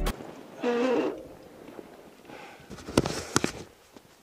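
Camera handling: a short pitched sound about half a second in, then two sharp clicks close together about three seconds in as the action camera is moved and re-aimed.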